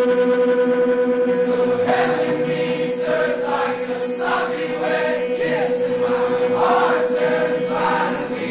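Live worship music: a group of voices singing together over a steady held note from the band, the singing coming in about a second and a half in.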